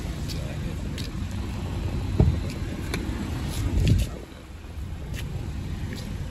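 A car door being opened: clicks of the handle and latch, and a heavy thump about four seconds in as the door unlatches and swings open, over a steady low rumble.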